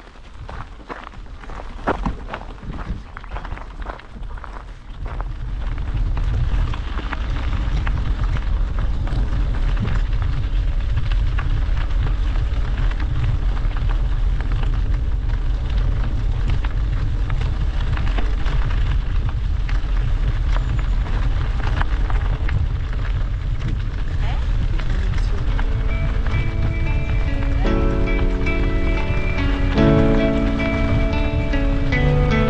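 Wind buffeting the microphone of a camera on a moving bicycle, a steady low rumble mixed with tyre noise on a gravel path. It grows louder over the first few seconds as the bike gathers speed. Background music comes in near the end.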